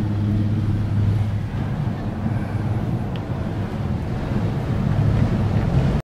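Steady low hum with wind on the microphone while riding in a cable car gondola, with a faint tick about three seconds in.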